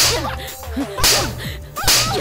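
Three loud slaps about a second apart, a hand striking a man's face and head, over background music.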